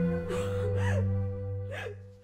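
A woman sobbing in short gasping cries, three times, over background music holding a steady low note.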